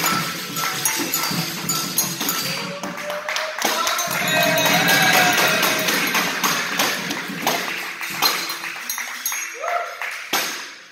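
Live capoeira roda music: a pandeiro's jingles and beats with a berimbau and atabaque drum, over hand clapping and group singing.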